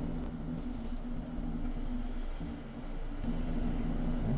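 Bethlehem Stacks I glassblowing bench torch burning with a steady rush as its flame is turned from a soft yellow gas flame to a sharp blue oxygen flame. The sound dips briefly a little before three seconds in, then comes back slightly stronger.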